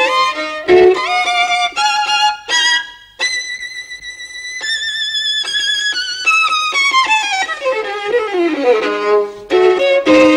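Solo violin playing a melody: quick ornamented phrases, then a long high note held with vibrato about three seconds in, followed by a long run of notes stepping downward, with quick phrases returning near the end.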